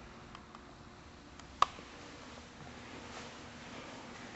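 Quiet indoor room tone with a few faint ticks and one short, sharp click about one and a half seconds in.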